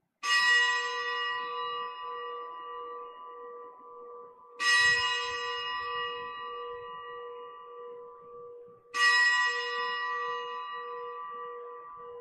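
A bell struck three times, about four seconds apart, each stroke ringing out and fading slowly, marking the elevation of the chalice at the consecration of the Mass.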